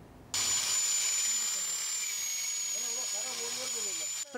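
Homemade electric lawn mower, a corded electric motor mounted on a wooden frame, running and cutting grass: a steady high whine over a hiss, starting suddenly just after the start and dropping slightly in pitch about two seconds in.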